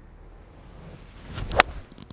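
A golf iron swung at full speed, a rising whoosh through the air ending in one sharp, crisp strike of the clubface on the ball about one and a half seconds in: a solid, well-struck shot, called good-sounding.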